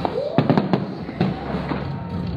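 Aerial fireworks bursting overhead: a quick cluster of sharp bangs about half a second in, with another a little after one second.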